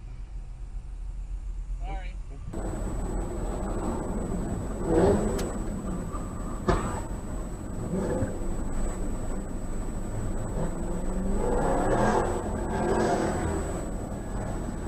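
Dashcam audio from inside a car: low engine and road rumble with a steady high-pitched electronic whine, indistinct voices now and then, and two sharp clicks midway. The sound changes abruptly about two and a half seconds in.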